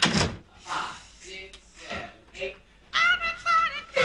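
A sharp thump at the start, then brief scattered voice sounds; about three seconds in a high, wavering voice calls out twice.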